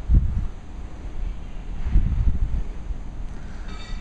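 Wind buffeting the microphone: a low rumble with two stronger gusts, one at the start and one about two seconds in.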